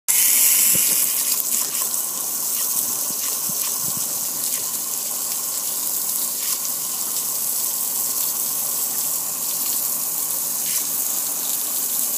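Steady hiss of a water spray hitting a metal gas grill, with water running off and splashing onto the patio; a little louder in the first second and a half.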